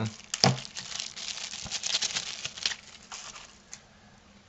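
Clear plastic zip-lock bag crinkling as it is worked open and the microscope camera adapter pulled out, with a sharp click about half a second in. The crinkling dies away near the end.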